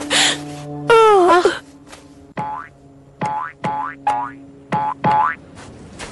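Cartoon sound effects: a swooping tone about a second in, then six short, rising boing-like chirps, comic accents for a spear prodding someone's head, over a held background-music note.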